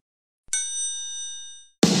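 A single bright, bell-like ding that rings out and fades over about a second. Music begins just before the end.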